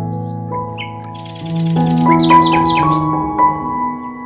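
Slow, calm background music of sustained keyboard-like notes, with bird chirps over it: a few short calls near the start, then a quick run of chirps in the middle.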